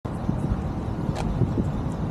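Low, irregular outdoor rumble of wind on the microphone and an idling pickup truck, with a single sharp click about a second in.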